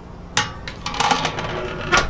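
Hard clinks and knocks of grill gear being handled, such as a ceramic plate setter and a metal gripper: a sharp knock, then a run of irregular clattering and scraping, with another sharp hit near the end.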